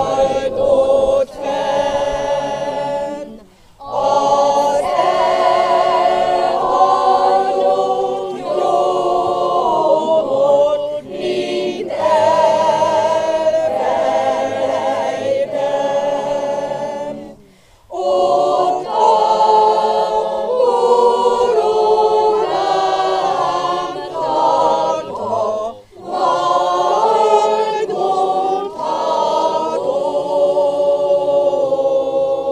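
Mixed choir singing a funeral hymn a cappella, in long phrases broken three times by brief pauses for breath.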